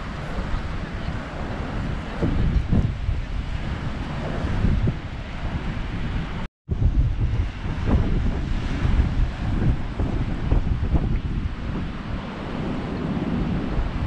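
Storm waves surging and breaking over a rocky shore, with heavy wind buffeting on the microphone. The sound cuts out completely for a moment about six and a half seconds in.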